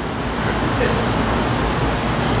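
Steady, even rushing background noise with no distinct event in it.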